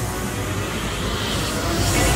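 Chevrolet Camaro SS V8 engine running with a low rumble, steadily growing louder.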